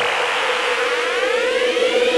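Electronic music build-up: a held synth tone with a sweep rising steadily in pitch above it.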